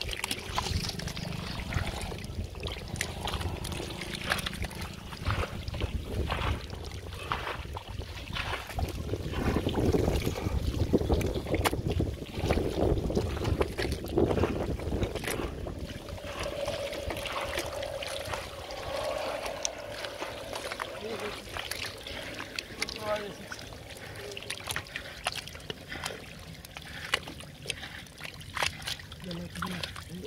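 Hands digging and scooping through soft wet mud: irregular wet squelches and slaps, with water trickling.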